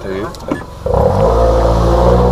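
Toyota Alphard minivan's engine and exhaust, its centre muffler replaced by a straight pipe, breaking into a loud, steady drone about a second in as the van pulls away under throttle.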